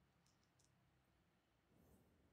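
Near silence: a pause in the narration with only faint room tone.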